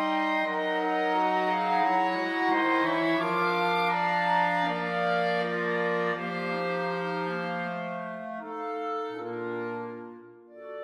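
Clarinet choir (E-flat, three B-flat, alto and bass clarinets) playing loud sustained chords in a slow hymn-like piece. The chords slow and fade, and near the end a soft chord comes in with a low bass note beneath it.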